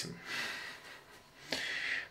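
A man's breath: two breathy exhales through the nose or mouth, one in the first half-second and another near the end.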